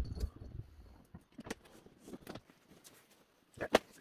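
A large hard guitar case being turned and handled: a low bump at the start, then a few faint knocks, and two sharper clicks near the end.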